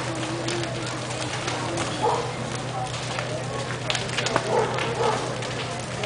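Irregular sharp crackling and popping from a building fully ablaze, with people's voices in the background.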